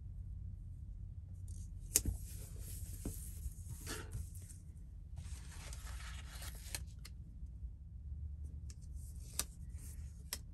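Paper stickers being peeled from a sticker book sheet and handled: two stretches of dry paper rustling, with a sharp tap about two seconds in and a smaller one near the end, over a low steady hum.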